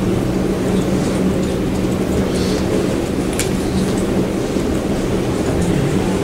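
Steady low rumble of room noise with a constant hum, and a single faint click about three and a half seconds in.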